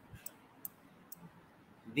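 Faint, sharp computer mouse clicks, three or four at uneven intervals, as a number is written stroke by stroke on a digital whiteboard.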